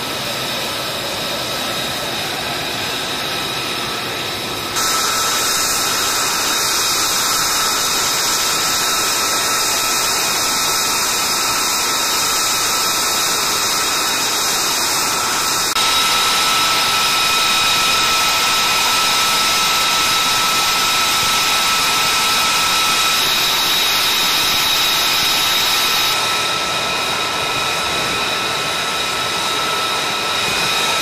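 F-35A's Pratt & Whitney F135 jet engine running on the ground during a hot-pit refuel: a steady rushing noise with a high whine of several steady tones. The level steps up about five seconds in and shifts again about halfway through and near the end.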